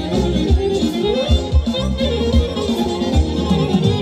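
Amplified folk band playing a Macedonian dance tune, a melody over a steady, regular drum beat.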